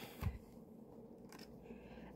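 Faint handling of a tarot card in a quiet small room: a soft knock just after the start, then light ticks and rustle as the card is picked up.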